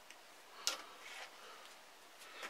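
Chicken wire being handled and shaped by hand: a few faint metallic ticks of the wire mesh, with one sharp click about two-thirds of a second in.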